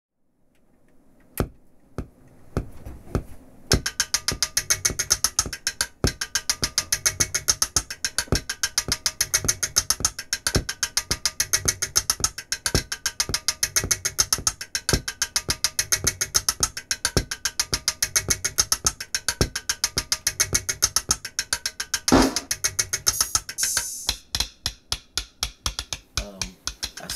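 Opening music built on a drum beat. After a few sparse hits it settles, about four seconds in, into a fast, evenly repeating ticking pattern over a deep recurring pulse. There is a loud swell about 22 seconds in, after which the beat thins to a few clicks.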